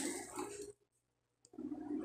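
A woman's brief laugh trailing off, then a gap of dead silence, then faint low sounds near the end.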